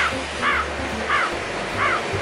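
A crow cawing three times at an even pace, each caw rising and then falling in pitch. It is a sound effect edited in over the pause.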